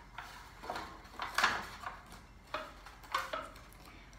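Disposable aluminium foil pan crinkling and clattering as it is handled while cardboard is taped inside it, in about five short bursts.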